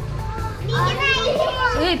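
Young children's voices chattering over background music, the voices coming in about half a second in.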